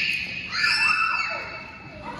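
Children shrieking at play in a gym: a high-pitched scream about half a second in that fades out within a second, over the background chatter of the hall.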